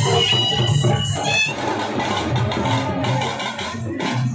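Loud music with a steady beat. A high melody line sounds for about the first second and a half.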